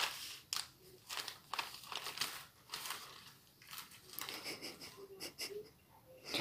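Newspaper pages rustling and crinkling as a small child's hands smooth them flat and turn them: a string of short, soft rustles, several a second.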